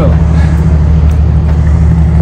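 Steady low hum of an idling motor vehicle engine, even and unbroken.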